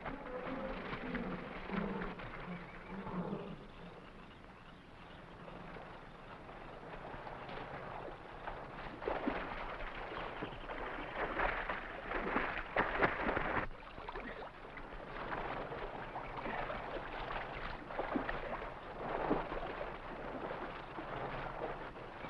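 Water splashing from a man swimming across a river while pushing a small log raft; the splashing comes in uneven bursts, busiest from about nine to fourteen seconds in.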